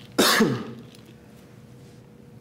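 A man's single short cough to clear his throat, its pitch falling at the end.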